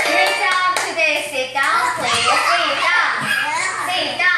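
A children's song ends in the first second, followed by young children's high, excited voices with a few hand claps.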